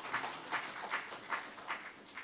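Sparse hand clapping from a small audience, about two or three claps a second, fading out right at the end.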